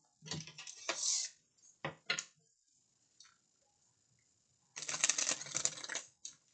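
A deck of reading cards being shuffled by hand: bursts of quick papery clicking, a pause of about two seconds in the middle, then a longer, louder run of shuffling near the end.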